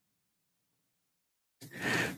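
Dead silence, then near the end a short breath from a man drawing air in before he speaks again.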